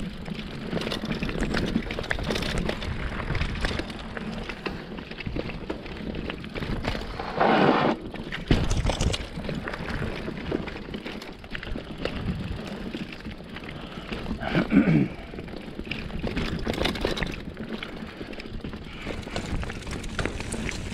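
Mountain bike rolling fast down a dirt singletrack: tyres rumbling and crunching over dirt, roots and rocks, with the bike's chain and frame rattling over the bumps. Two brief louder bursts stand out, about a third of the way in and about three quarters of the way through.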